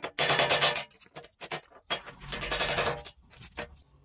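A hammer striking a cooled slag cone from a gold-ore smelt, chipping the glassy slag off the metal button at its tip. The blows come as a few short bursts of rapid clattering taps.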